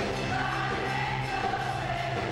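Live band playing while several voices sing together, holding one long note through most of the moment.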